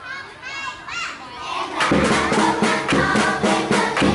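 Children's voices calling out together, then about two seconds in a drum beat starts with music over it, a quick steady rhythm.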